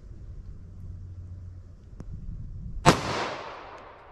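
A single 9mm +P pistol shot from a Smith & Wesson M&P 9 2.0 with a 5-inch barrel, firing a 124-grain Federal HST hollow point, about three seconds in. The report is sharp and dies away over about a second.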